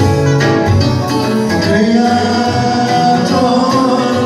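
A man singing a worship song into a microphone, amplified through PA speakers, with accordion accompaniment.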